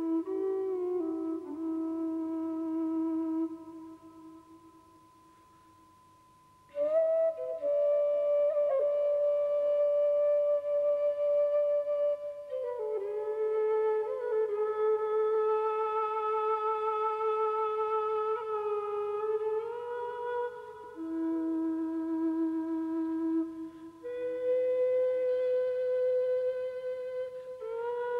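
Slow air of long, held notes on a low whistle, moving slowly between pitches with light ornaments, over a steady high held tone. The music falls almost silent for about three seconds from around four seconds in, then resumes.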